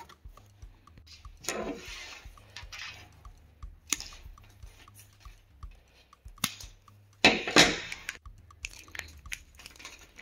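Diagonal cutters working on electrical wire, with hands handling the wires: scattered small clicks and short crunches, and one longer, louder crunch about three-quarters of the way through.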